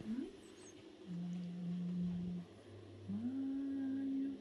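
A woman humming a slow tune in long held notes. The pitch slides up into a higher held note about three seconds in.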